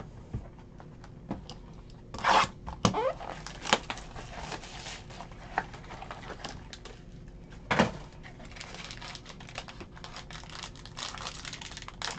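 A foil trading-card pack and its box handled and torn open: crinkling with several sharp tearing bursts.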